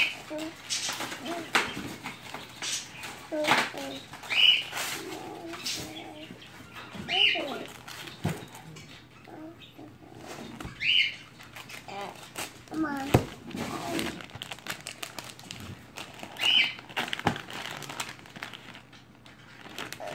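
Gift-wrapping paper crinkling and rustling as a present is handled and torn open, in many short crackles. Short high chirps come every few seconds over it.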